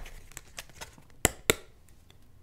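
A few faint clicks, then two sharp clicks about a quarter of a second apart a little over a second in, over quiet room tone.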